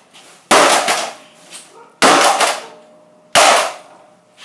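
Three sharp blows on a Toshiba DVD player's casing, about a second and a half apart, each dying away quickly with a little metallic ring; the player is taking the hits without breaking.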